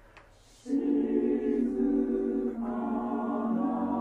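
Mixed four-part choir (SATB) singing sustained chords. It comes in after a brief near-silent pause less than a second in, and the harmony shifts twice, about halfway and again near the end.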